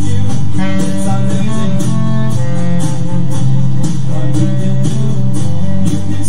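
Clarinet playing a melody of held notes over a loud recorded backing track with a steady beat.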